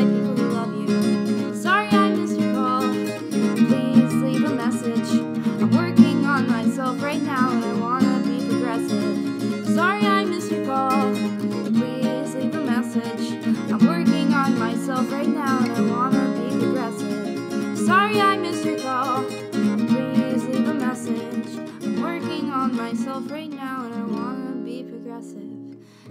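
Acoustic guitar strummed in a folk-punk song, an instrumental stretch between verses, dropping off in level just before the end.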